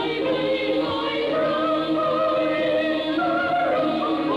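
A choir singing long, slowly shifting held notes as part of the music soundtrack.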